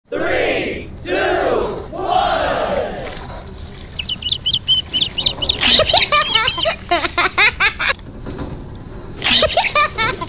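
Three swooping sounds in the first three seconds, then rapid high-pitched voices shouting and chattering.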